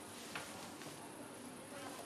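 Faint, steady high-pitched chirring of night insects, with two soft clicks.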